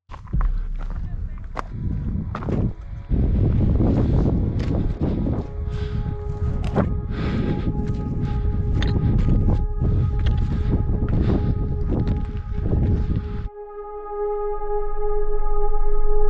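Wind buffeting the microphone in a low rumble, with scattered sharp knocks and clicks of hands and boots on rock during a ridge scramble. About two seconds before the end this stops and gives way to a steady held musical chord that swells louder.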